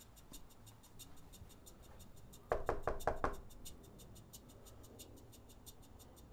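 A quick run of four or five knocks on a front door about two and a half seconds in, over soft background music with a steady fast ticking beat.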